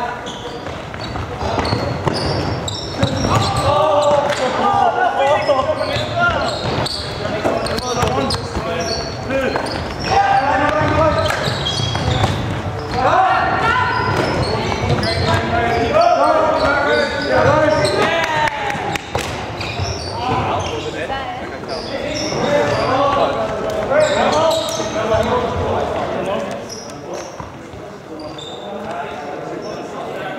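Players' voices shouting and calling to each other across a reverberant sports hall, over running footsteps and short thuds of trainers on the wooden court floor.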